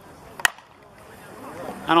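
A softball bat hitting a pitched softball once: a single sharp hit about half a second in.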